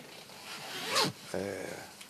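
A man's short, audible breath about a second in, followed by a brief low hesitation sound from the voice, picked up close on a lapel microphone.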